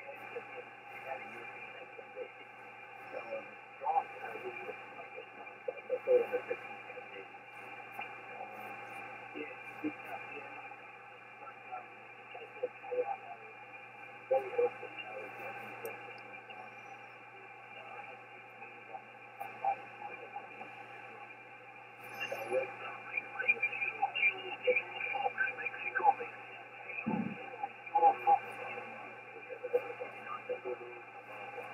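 Shortwave single-sideband receiver audio from an Icom IC-7610 on the 17-metre amateur band: band noise with faint steady whistles and weak voices of distant stations that are hard to make out, picking up a little about two-thirds of the way through. The sound is thin and narrow, cut off like a radio's voice passband.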